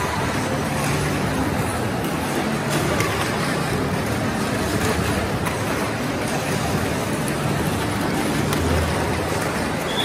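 Tamiya Mini 4WD cars running laps on a plastic track, their small electric motors making a steady whir.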